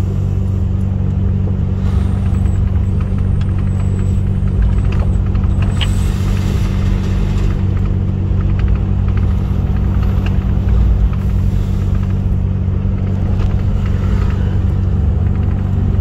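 Heavy truck's diesel engine running steadily at low speed, heard from inside the cab as a loud, even low drone.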